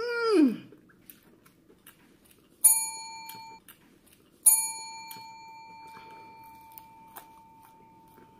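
Chrome dome service bell struck twice, about two seconds apart: the first ring is cut short after about a second, the second rings on and slowly fades.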